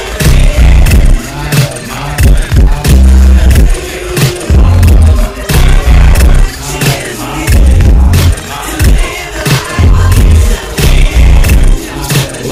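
West Coast G-funk hip hop track with heavily boosted bass: loud, deep bass notes hit every second or two under the beat.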